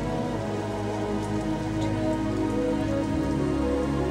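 Steady rain falling, heard over slow sustained synthesizer chords of a new-age song, with the bass moving to a new note about three seconds in.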